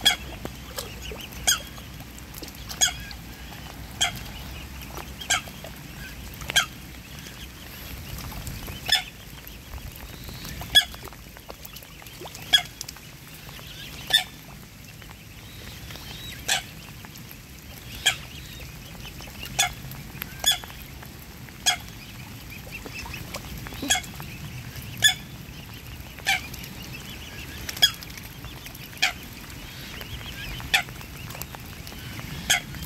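Mute swans and cygnets feeding in shallow water: short, sharp sounds come about every one to two seconds, some twenty in all, over a steady low background.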